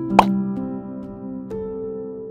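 Channel intro music with held synth-like notes that change every half second or so. About a fifth of a second in comes a short pop sound effect with a quick upward sweep in pitch.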